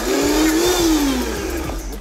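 Countertop blender running on chickpeas for hummus. Its motor pitch rises over the first second, then falls back and fades near the end.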